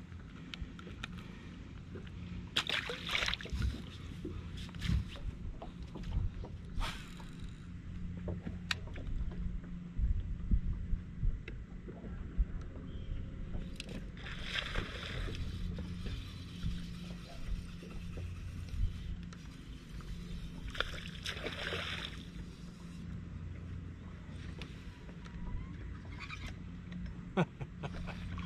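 Water sloshing against a bass boat's hull over a steady low hum, with a few short noisy rushes.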